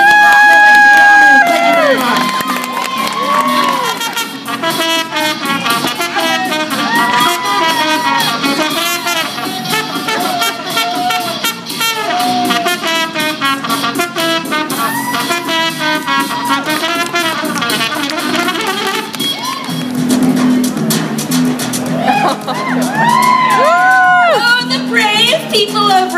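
Trumpet playing a jaunty melody, opening with a long held note. A steady low drone joins under it about 20 seconds in.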